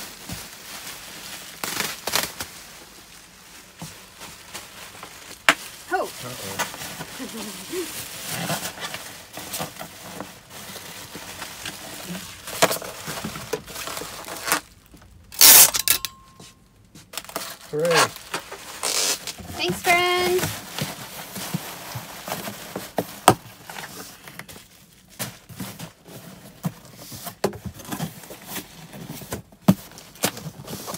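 Plastic bubble wrap being crinkled and handled as an item is wrapped and packed into a cardboard box, in irregular crackles with a loud noisy rip or crunch about halfway through. Brief murmured voices come and go.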